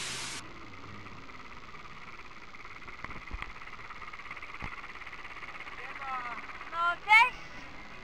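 Pronar 1025A tractor's diesel engine running faintly and steadily. There are two short knocks in the middle, and brief high-pitched voice sounds near the end.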